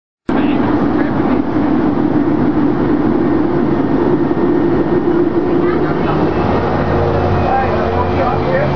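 Loud, steady cabin noise of a parabolic-flight aircraft in flight: engine and airflow noise filling the padded cabin. Faint voices and tones join in near the end.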